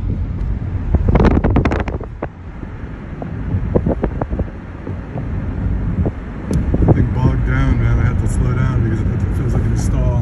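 Steady low rumble of a 2013 Kia Soul with the 1.6 L GDI engine being driven at speed, heard from inside the cabin: engine, tyre and wind noise together. A few sharp knocks come about a second in.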